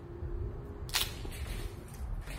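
Dry tree limb snapping with one sharp crack about a second in.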